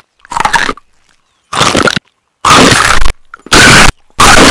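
Cartoon crunching of tree bark being chewed: four crunches about a second apart, each louder than the last. The later crunches are boosted so far that they clip into harsh, flattened distortion.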